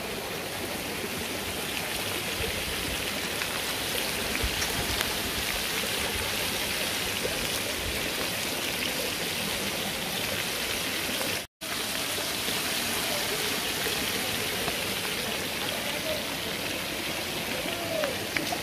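A rocky mountain stream rushing steadily over stones, with one sudden cut-out to silence just past the middle.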